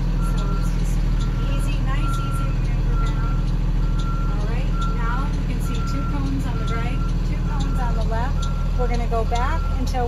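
School bus engine running steadily as the bus reverses slowly, with its backup alarm beeping about once a second.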